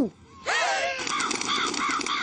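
A flock of crows cawing in quick, repeated calls, starting about half a second in.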